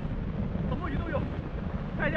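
Wind rumbling steadily on the camera's microphone in the open air at sea, with a few faint words from a man about halfway through.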